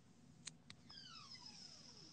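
Near silence: faint room tone with two soft clicks about half a second in, then a faint tone sliding steadily downward in pitch through the rest.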